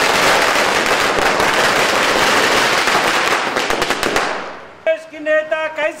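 A string of firecrackers going off in a rapid, continuous crackle of cracks that dies away about four and a half seconds in. Near the end, men start shouting.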